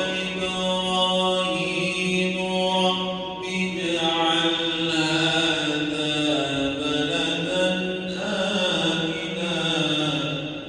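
A man reciting the Quran in Arabic in a slow, melodic chant, holding long notes with gently gliding pitch.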